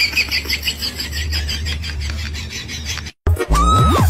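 Background music over a steady low hum, cut off abruptly after about three seconds. After a brief gap comes a quick sound rising sharply in pitch, then a dance track with a heavy beat starts near the end.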